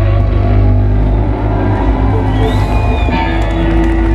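A live band with guitars, keyboard and drums playing loud amplified music: held notes over a heavy, steady bass.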